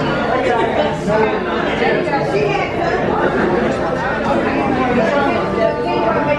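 Many overlapping voices chattering in a busy restaurant dining room.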